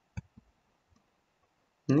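Two quick computer mouse clicks, about a fifth of a second apart.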